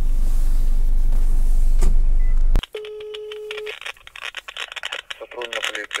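Steady vehicle noise with a low hum, cut off abruptly about two and a half seconds in. Then, over a phone's loudspeaker, one ringback tone: a steady single tone lasting about a second while the call to the police duty line rings. Faint voices follow on the line.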